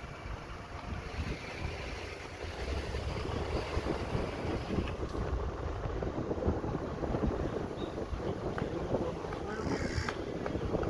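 Wind buffeting the microphone of a camera moving along a road, over a low rumble, getting louder a few seconds in.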